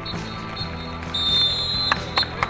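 Referee's pea whistle blown in two blasts, a short one at the start and a longer, louder one about a second in, over background music.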